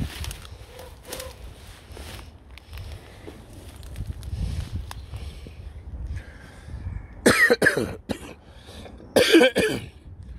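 A man coughing in two loud bouts, about seven and nine seconds in, over a steady low rumble.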